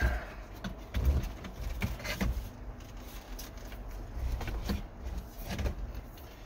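Irregular clicks and knocks of plastic dash trim and wiring being handled, the loudest right at the start and about a second in, over a low steady background rumble.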